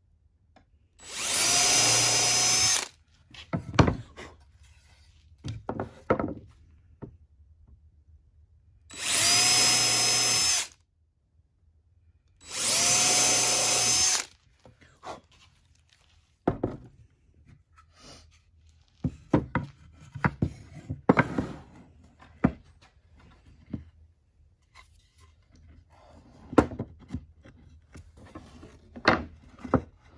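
Cordless drill boring countersunk holes in a plywood cross brace with a countersink bit: three runs of about two seconds each, the motor spinning up to a steady whine each time. Then come scattered knocks and clatter of wood pieces being handled and set down.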